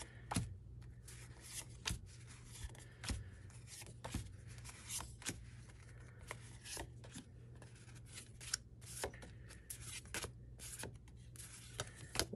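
Paper journaling cards being flipped and slid off a stack by hand: irregular soft flicks and brushes of cardstock, about one or two a second, over a faint low hum.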